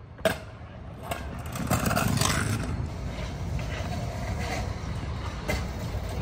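Stunt scooter landing a jump with one sharp smack about a third of a second in, then its wheels rolling over rough concrete, a steady rumbling noise that swells about a second and a half in.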